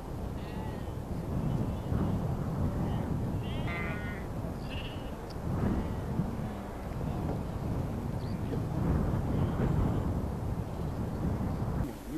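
A flock of sheep bleating a few times over a steady low rumbling noise.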